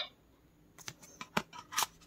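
A printed card being pulled out of and slid into the slot of a plastic talking flash card reader: a few sharp clicks and scrapes, starting about a second in.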